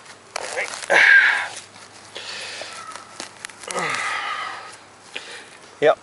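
Plug being dug by hand in grassy, rocky soil: several irregular scraping and crunching bursts of earth and roots, the loudest about a second in.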